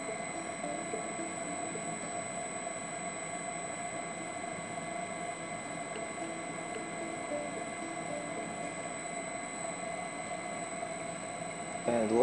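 A three-phase motor running on an SP500 inverter drive, with the drive itself: a constant hum carrying several steady high tones, unchanging throughout.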